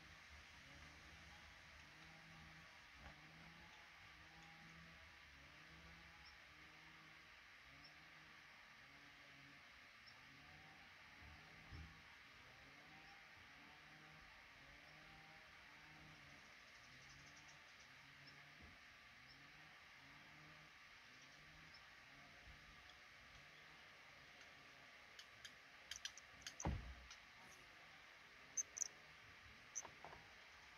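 Near silence: a faint low sound repeating evenly about once a second, with a few sharp clicks and a single dull thump in the last few seconds.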